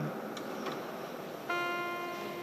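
Faint room noise, then about one and a half seconds in a single note from a musical instrument starts sharply and rings on, slowly fading.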